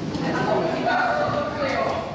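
People talking as a group walks through a stone-walled underpass, with their footsteps on the hard floor beneath the voices.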